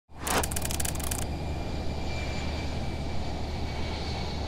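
Steady low drone and rushing noise of a jet airliner in flight, with a quick run of fast ticks in the first second.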